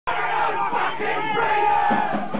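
Crowd of voices shouting together, with one long held shout through the second half.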